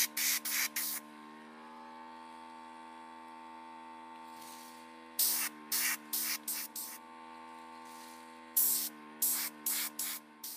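An airbrush blowing short bursts of air as its trigger is pressed, pushing wet alcohol ink across a ceramic tile. There are about four quick puffs in the first second, another run of about five in the middle, and about four more near the end.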